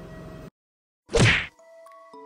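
Edited transition sound effect: steady background noise cuts off abruptly, and about a second in comes a single loud, short whoosh-hit that sweeps from high to low pitch. Soft held chime notes follow near the end.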